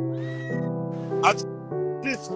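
Background music of steady held chords, with two short high-pitched cries over it, the first rising in pitch.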